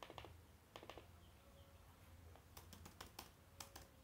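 Faint clicks of computer keyboard keys being typed in a few short runs, the densest near the end, over a low steady hum.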